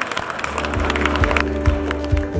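Audience applause dying away as background music with a deep bass line comes in, about half a second in.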